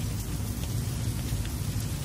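Steady hiss of falling rain, with a low steady hum underneath.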